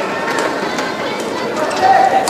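Badminton hall crowd noise: a steady din of many spectators' voices, with a few short, sharp clicks and squeaks from play on the court.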